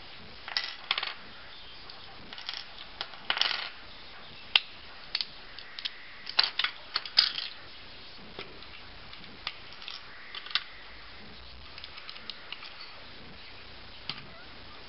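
Plastic Lego pieces clicking and clacking as a model is pulled apart and handled: irregular sharp clicks, some in quick clusters, with a few louder snaps about halfway through.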